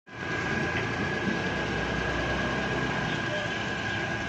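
Hyundai i10 1.1 petrol engine running steadily at idle, heard close up in the engine bay, with a steady high-pitched whine over the low rumble.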